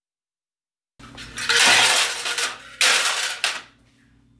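Empty metal sardine cans clattering into a plastic tub, in two bursts of rattling about a second apart, the second shorter.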